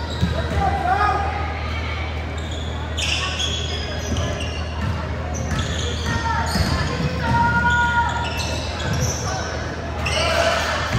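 Basketball bouncing on a hardwood gym floor as players dribble during a game, with players' calls echoing in the hall.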